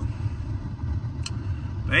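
Low, steady rumble of a car engine idling, heard from inside the cabin, with one faint click a little past halfway.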